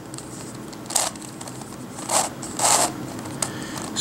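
Plastic layers of a Crazy Radiolarian twisty puzzle being turned by hand: three short scraping turns, the last two close together, then a fainter one near the end.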